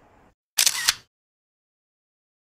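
A camera shutter sound: a loud double click, two snaps about a third of a second apart, set between stretches of dead silence.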